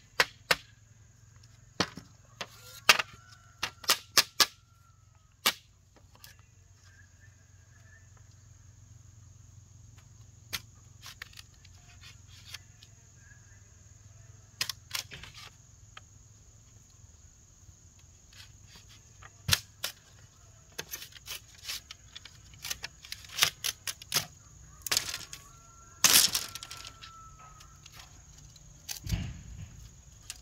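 Machete blade striking a green bamboo pole: sharp, irregular knocks and cracks, some coming in quick runs of three or four, with pauses between.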